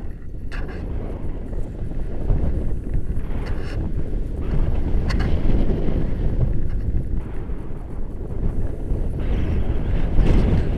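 Airflow buffeting an action camera's microphone during a paraglider flight: a low, gusting rumble of wind noise that swells and eases.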